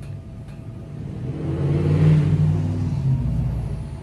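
A motor vehicle passing by: its engine sound swells to a peak about two seconds in and then fades away.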